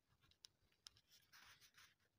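Ballpoint pen writing on ruled notebook paper: faint scratching of the pen strokes with a few small ticks, the scratching densest in the second half.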